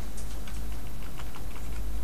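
Typing on a computer keyboard: a quick run of key clicks over a steady low hum.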